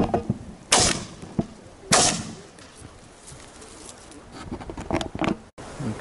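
Two shotgun shots from a double-barrelled shotgun, about 1.2 seconds apart, each a loud crack with a short ringing tail. A few lighter clicks and knocks follow near the end.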